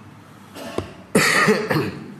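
A man coughing into his hand: a short, loud bout of coughs starting about a second in.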